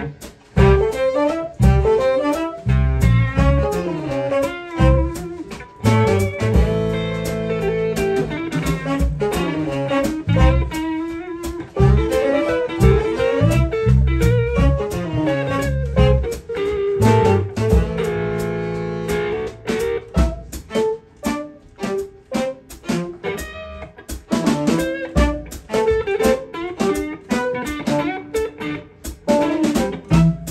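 Live instrumental band playing: violin, clarinet, electric guitar, bass, drums and keyboards, with the electric guitar to the fore. Chords are held for a few seconds twice, and crisp drum hits come thicker in the second half.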